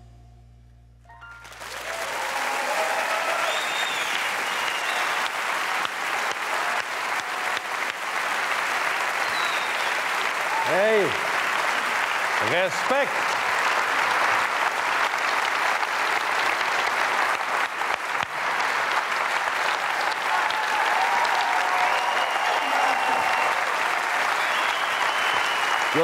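The last sung note fades out, then a large studio audience breaks into applause about a second and a half in, and the clapping continues at a steady level.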